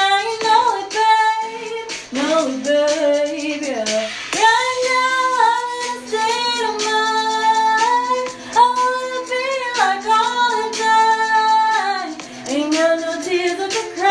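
A woman singing a pop-song cover, holding long notes of about a second each and gliding between them.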